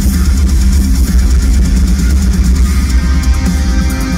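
Heavy metal band playing live in an arena: loud distorted electric guitars with bass and drums, with held guitar notes coming in near the end.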